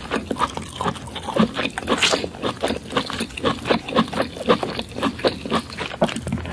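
Close-miked wet chewing and lip-smacking of someone eating lobster meat in curry sauce: a quick, uneven run of sticky mouth clicks, with one sharper, louder burst about two seconds in.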